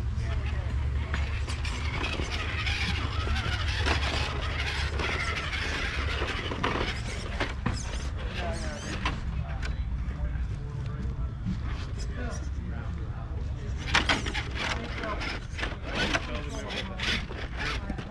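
Radio-controlled scale rock crawler's small electric motor and geartrain whining as it crawls over rocks, with scattered short knocks and clicks. People talk in the background.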